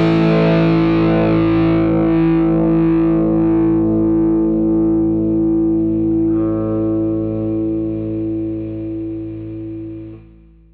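The song's final chord ringing out: a distorted electric guitar chord over bass, held without a new strike and slowly dying away, fading out near the end.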